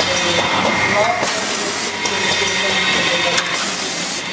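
Rotary premade-pouch filling machine running, a steady mechanical clatter with bursts of air hiss every second or so from its pneumatic actuators as the pouch grippers index.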